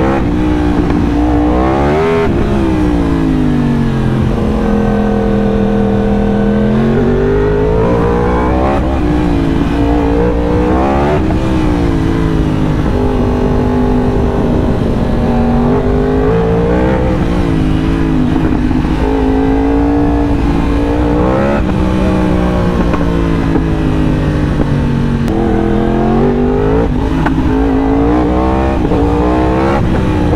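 2018 Yamaha R1 sportbike's 998 cc crossplane inline-four engine under way, heard from the rider's seat. Its pitch climbs and falls again and again as the rider opens the throttle, shifts up and rolls off.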